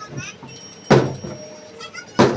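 Men laughing in short bursts, with one sharp knock about a second in.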